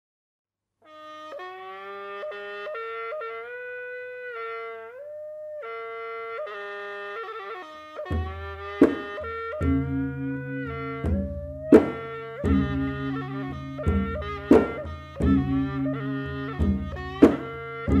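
Cambodian-Thai kantruem ensemble music: a solo wind instrument plays an ornamented, sliding melody, and hand drums join about eight seconds in with sharp strokes over a steady repeating beat.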